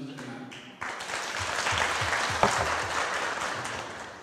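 Audience applause, breaking out about a second in and dying away near the end.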